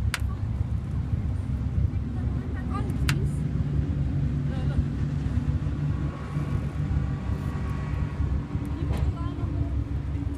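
A sailing yacht's inboard engine running with a steady low hum. A few sharp clicks or knocks from the deck come at the start, about three seconds in and near nine seconds.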